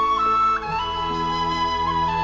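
Instrumental relaxing music: a flute plays a slow melody of held notes over soft sustained chords, with the bass moving to a new chord a little over half a second in.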